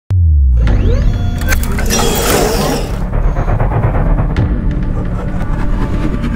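Intro music with a logo sound effect: a deep bass boom starting suddenly, a steady low rumble, and a burst of noise about two seconds in that lasts about a second.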